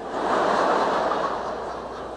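A large congregation laughing together at a joke, the laughter swelling about half a second in and then slowly dying down.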